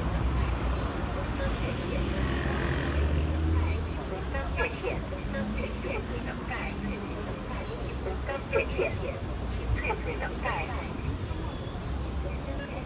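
Busy city street: steady rumble of road traffic, swelling as a vehicle passes a few seconds in, with scattered voices of people close by.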